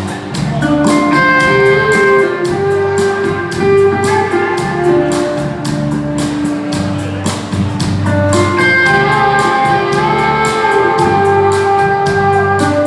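Live band playing an instrumental passage: a lap steel guitar's held, sliding notes over strummed acoustic guitar and a drum kit keeping a steady beat.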